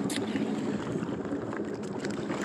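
Motorboat engine running steadily while the boat is underway, a low hum under a steady rush of wind and water.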